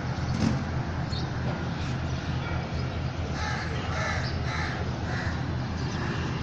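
A bird calling about four times in the second half, short repeated calls over a steady low hum.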